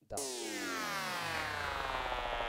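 Serum software synth playing a digital wavetable note whose pitch glides steadily downward, an LFO-driven down-sweep used as an impact effect.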